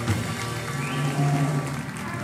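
Small jazz combo playing: upright bass notes under trumpet and keyboard, with a long held low bass note in the second half.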